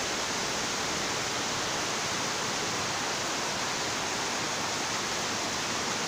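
Rain falling in a steady downpour, an even hiss that holds at one level throughout.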